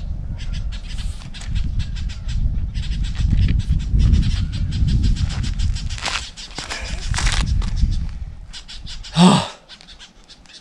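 Camera handling noise: a rumble with many sharp clicks and scrapes as the camera is moved about, for about eight seconds. Near the end, one loud short call falls in pitch.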